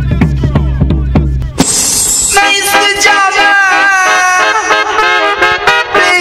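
Early-80s rub-a-dub reggae record: drum hits that fall in pitch over a stepping bass line, then a crash about a second and a half in, after which the bass drops out and held, horn-like chords play.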